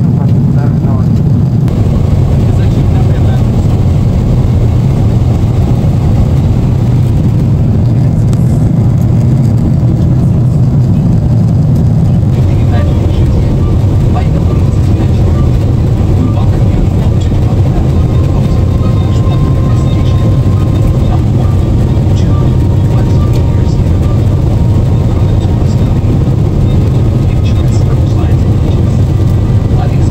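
Steady, loud, low rumble of an airliner cabin in flight: jet engine and airflow noise carried through the fuselage.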